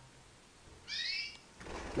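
A canary giving one short, rising call about a second in.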